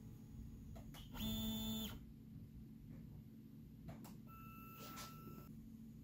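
Stepper motors of an MPCNC router jogging the machine under low room hum. There is a short whine with several overtones about a second in, and a higher steady tone for about a second near the end.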